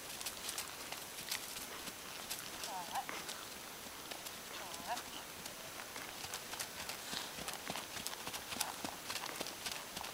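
Faint hoofbeats of a small pony moving over a grass arena, a steady run of soft thuds as it trots and canters under a rider.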